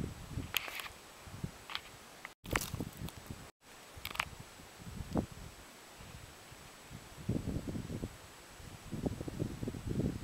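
Quiet outdoor ambience: a faint hiss of light wind with scattered soft clicks, knocks and scuffs from camera handling and shifting on the rock. The sound cuts out completely twice, briefly, a few seconds in.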